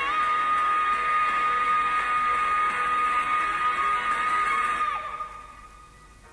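Background pop song: a voice holds one long high note over the backing for about five seconds, then the song fades down to a much quieter passage near the end.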